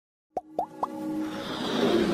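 Animated logo intro sound effects: three quick pops about a quarter second apart, each sliding up in pitch, then a music swell that builds steadily louder.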